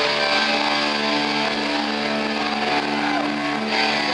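Live punk rock band's distorted electric guitars and bass holding a long, steady ringing chord, loud and without drum hits, as a song's ending is drawn out.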